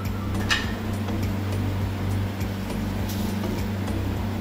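Steady low hum and hiss of a lit gas stove under a clay pot of simmering rasam, with a couple of faint ticks.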